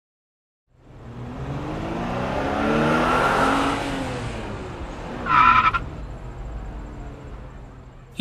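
Sports-car engine sound effect fading in and swelling to its loudest about three seconds in, then a brief high tyre squeal about five seconds in as the car pulls up, after which the engine runs on more quietly.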